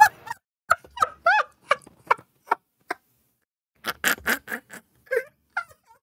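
A man laughing hard in short, high-pitched cackling bursts: a run of them, a pause of about a second halfway through, then another run that trails off near the end.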